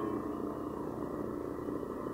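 A passage of electroacoustic music: a dense, steady drone of many layered tones with a grainy low rumble, held evenly between louder swells.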